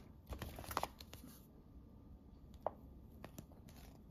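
Glossy brochure pages rustling as they are turned over for about the first second and a half, followed by a few faint ticks and taps.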